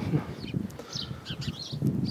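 Small birds chirping: a string of short, high chirps through the middle, over a faint low background.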